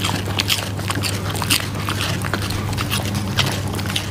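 A corgi chewing something crunchy: quick, irregular crunching clicks from its jaws, over a steady low hum.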